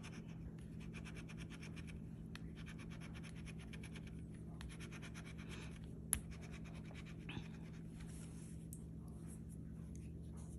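Metal bottle opener scraping the coating off a scratch-off lottery ticket in rapid, faint strokes, with one sharp tap just after six seconds in.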